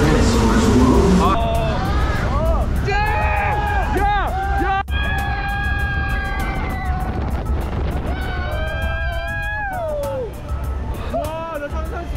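Riders screaming and yelling on a boat ride, with several long, held cries and rising-and-falling shouts over a steady low rumble. The first second is a loud rushing noise, and music with a ticking beat runs underneath.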